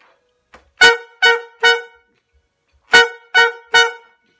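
Saxophone and trumpet playing short staccato notes together, two groups of three punchy hits with a pause between the groups.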